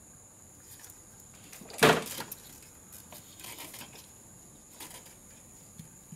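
A single sharp plastic clack about two seconds in as an ignition coil is pushed down into place on the cylinder head, followed by a few faint handling clicks.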